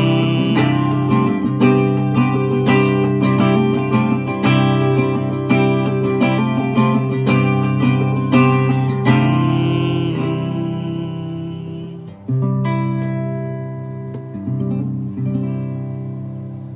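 Acoustic guitar strumming chords in a steady rhythm, then slowing, with a last chord struck near the end that rings out and fades.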